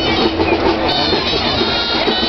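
Gralles, the shrill Catalan double-reed shawms, playing a folk melody over the noise of a street crowd.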